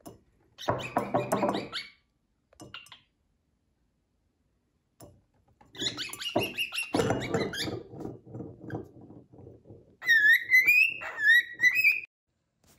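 Empty drinking glass knocked and rattled on a wooden tabletop by a cockatiel, in two spells of clattering with a lone click between them. Near the end come repeated short, rising, high chirps from the cockatiel.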